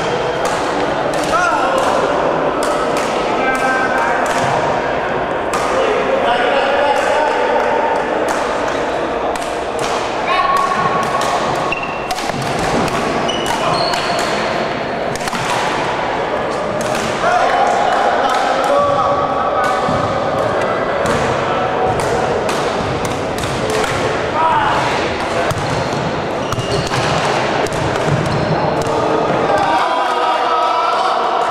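Echoing voices of players and onlookers chatting and calling across a sports hall, with frequent sharp knocks and thuds from badminton play on a wooden court.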